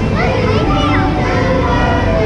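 Children's high voices gliding up and down, loudest in the first second, over steady background music from the ride.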